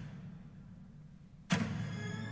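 Film score coming in on a sudden loud chord about a second and a half in, after a faint low hum, then holding sustained tones.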